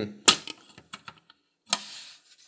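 A small metal hand tool and screw clicking against a hard plastic case front-panel frame. There is one sharp click about a quarter second in, then a few light ticks, and a short hissy scrape near the end.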